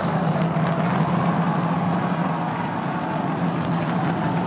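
SpaceX Super Heavy booster's Raptor engines firing in the landing burn, down to three engines for the tower catch: a steady, low, noisy rumble.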